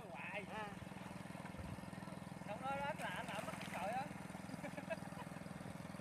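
A steady low motor drone runs underneath, with faint voices calling at a distance twice.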